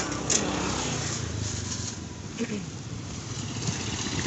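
Motorcycle and car traffic passing on the street: a steady engine rumble with hiss.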